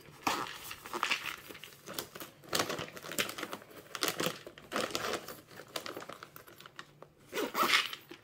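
A soft fabric zippered pouch being handled and zipped shut: rustling of the fabric and short, irregular rasps of the zipper.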